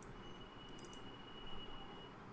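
Faint background room noise with a thin, steady high-pitched whine and a few soft, quick clicks about a second in.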